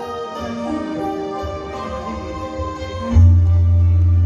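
Electronic keyboard playing the instrumental introduction to a bolero, with held chords; a loud, deep bass note comes in about three seconds in and holds.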